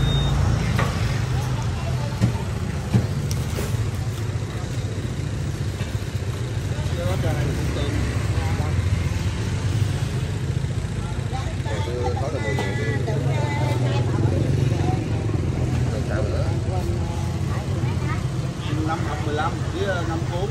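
A motor scooter engine running close by, a steady low hum, over busy street traffic with indistinct voices talking.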